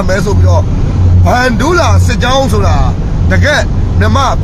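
A man talking inside a vehicle, with a steady low engine and road rumble running underneath the voice.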